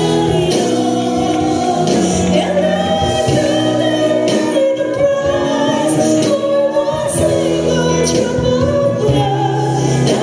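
A mixed choir of women and men singing a slow, solemn gospel worship song, the voices holding long notes.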